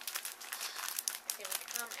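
Clear plastic bag crinkling as it is handled, a rapid, continuous run of crackles.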